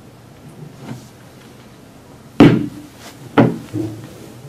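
Metal-cased Valeport RapidSV probe knocking as it is lifted out of a plastic tub of water and set down on a wooden table: one loud knock a little past halfway, then a second knock about a second later and a lighter one just after.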